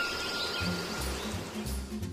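Background music starting up: a soft intro with a low, pulsing bass under an airy haze and a few held high tones.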